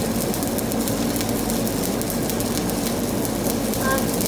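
Shielded metal arc (stick) welding arc on a steel pipe, a steady crackling sizzle as the electrode burns.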